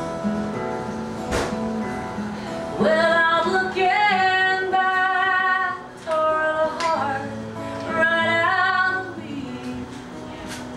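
A woman singing long, held notes over acoustic guitar; the guitar plays alone for about the first three seconds before the voice comes in.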